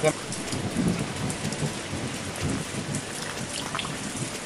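Steady rain falling, an even hiss with some irregular low rumble underneath.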